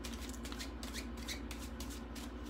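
A deck of playing cards being shuffled: a quick, even run of soft card snaps, about six a second.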